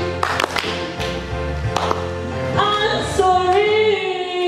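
Live female vocal over a backing track in a large hall. The first couple of seconds are a gap in the singing, filled by held accompaniment chords and a few sharp percussive hits. A long held sung phrase comes in about two and a half seconds in.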